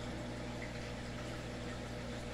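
Steady low hum and water-churning noise of a reef aquarium's pumps and wave maker running.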